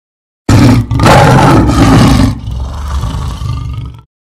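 A lion roaring once, loud, starting suddenly about half a second in and dying away over the last second or so.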